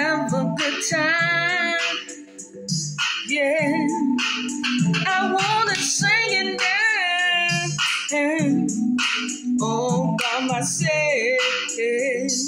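Music: a woman singing long held notes with a wavering vibrato over instrumental accompaniment.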